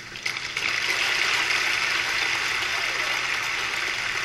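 Audience applause at the end of a live song, swelling in about half a second in and then holding steady and dense.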